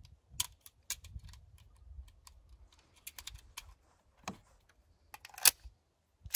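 A series of sharp metallic clicks as 9mm cartridges are pressed one at a time into a CZ 75 B pistol magazine. Near the end comes a louder metal clack as the pistol is made ready to fire.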